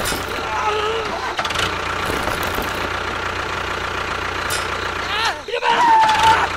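A steady engine running at an even pace, with short rising-and-falling voice-like cries about a second in and again near the end.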